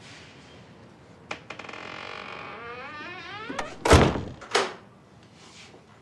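Wooden door creaking as it swings, a long creak falling in pitch, then shutting with a heavy thud about four seconds in, followed by a second, lighter knock.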